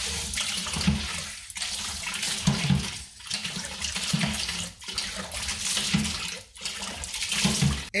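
Water gushing from the side spout of a homemade PVC hand pump and splashing into a bucket of water as the plunger is worked. It comes in surges, one with each stroke, about every second and a half.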